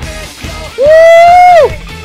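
Hard rock song with electric guitar playing, and a man's loud, held "Woo!" shout about a second in that drops in pitch as it ends.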